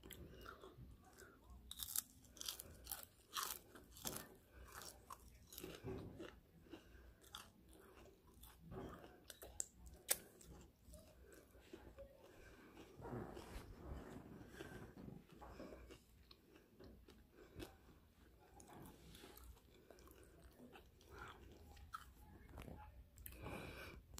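Close-up crunchy chewing of Cheetos-coated breaded shrimp: sharp crackling crunches come thick in the first few seconds, with one loud crack about ten seconds in, then softer, quieter chewing.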